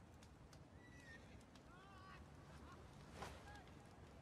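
Near silence: faint outdoor ambience with a few faint, short, high animal calls about one and two seconds in and a soft knock near the end.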